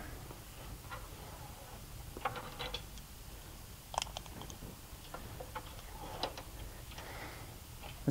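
Faint, scattered clicks and light metal rattles of a rope clip and rope being handled and clipped onto the metal standing frame, the sharpest click about four seconds in.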